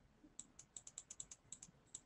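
Faint typing on a computer keyboard: a quick, uneven run of light key clicks starting about half a second in.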